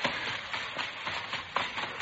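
Radio-drama sound effect of soft footsteps as men creep up on a car, over a quiet music underscore.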